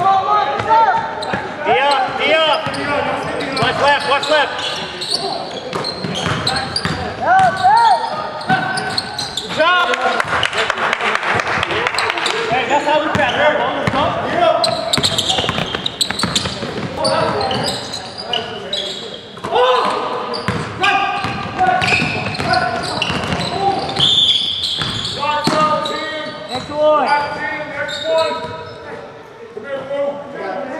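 Indoor basketball game heard from courtside: players and onlookers talk and shout over the thud of a basketball bouncing on a wooden gym floor, all echoing in a large hall.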